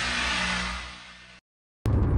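Logo sound effect: a whoosh over a low steady hum, swelling and then fading out about a second and a half in. After a brief silence, a loud low rumble starts abruptly near the end, as the rocket-launch scene begins.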